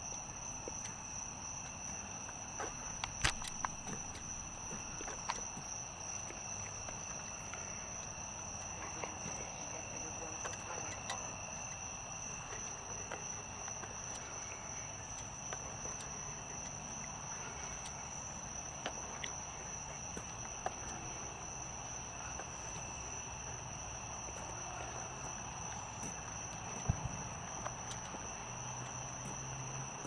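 Steady high-pitched chorus of night insects with a faint low hum under it. A few sharp clicks or knocks break through, the loudest about three seconds in.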